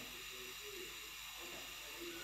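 Faint steady hiss of a lit gas stove burner.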